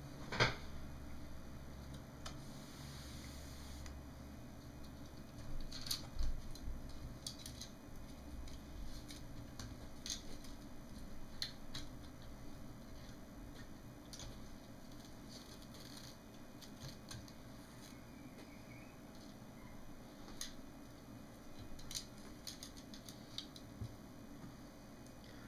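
Scattered small clicks and taps of hands handling a disassembled LCD monitor's circuit boards and cable connectors, with a sharper click about half a second in, over a faint steady hum.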